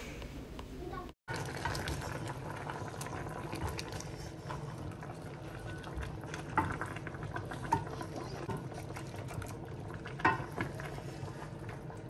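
Chicken pieces simmering in a little seasoned water in a stainless steel pan: a steady low bubbling. A few sharper knocks and scrapes come from a wooden spoon stirring the chicken.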